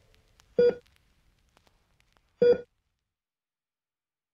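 Two short electronic beeps of a hospital patient monitor, nearly two seconds apart.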